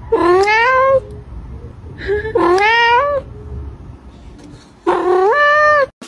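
A cat gives three long meows, each about a second long and rising in pitch, spaced about two seconds apart.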